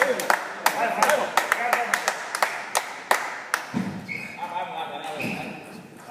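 Table tennis balls tapping in a large hall: a quick, irregular run of sharp clicks for the first three and a half seconds, then they stop. Voices murmur in the background throughout.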